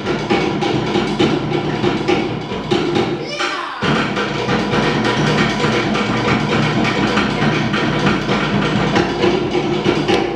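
Live Tahitian ʻōteʻa drumming: fast, dense rolls on to'ere slit-log drums keeping a driving rhythm for the dancers.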